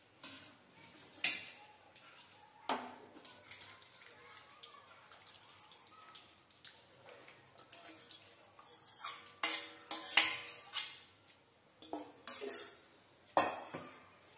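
Stainless-steel cookware knocking and clinking: a pan, a mesh strainer, a bowl and a spoon, as gooseberries in sugar syrup are tipped from the pan into the strainer. The sharp knocks are scattered, with the loudest about a second in and a cluster near the end.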